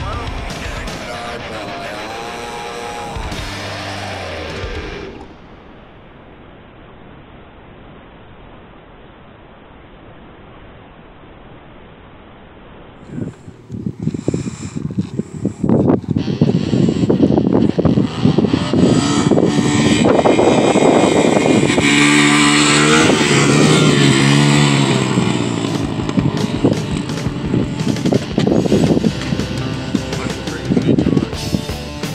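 Music for the first few seconds, then a quieter stretch. About halfway through, a small dirt bike engine comes in loud and rough, revving up and down, mixed with music.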